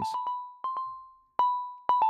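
Software synthesizer in Ableton Live playing a melody generated at random by a Turing Machine MIDI generator: short, high notes on two close pitches, each struck sharply and fading within about half a second, in an uneven rhythm.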